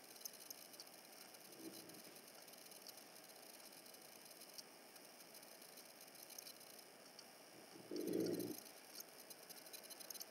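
Very faint room sound, broken about eight seconds in by a bulldog's short, low noise lasting about half a second, with a much fainter one near the start.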